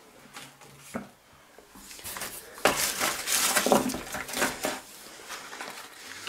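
Hands rummaging in a cardboard box of packing peanuts and handling small cardboard packets: a couple of light clicks and taps, then a louder stretch of rustling and shuffling through the middle.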